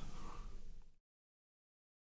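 Near silence: faint room hiss fading away over the first second, then about a second of dead digital silence.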